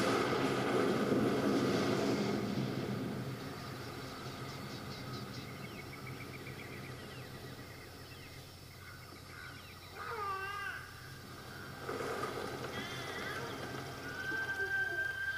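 A low steady drone, with a few fast chirps in the first seconds. Wavering, pitched cries come about ten seconds in and again near the end.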